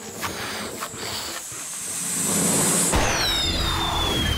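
Cartoon sound effect of a flying saucer lifting off: a hiss that builds for about two seconds, then a sudden low rumble with whistling tones falling in pitch.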